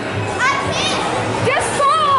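Children's voices shouting and squealing amid the hubbub of a busy play hall, several high-pitched yells rising and falling in pitch. A steady low hum runs underneath.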